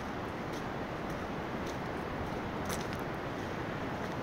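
Footsteps crunching on a gravel trail, about two steps a second, over a steady rushing background noise.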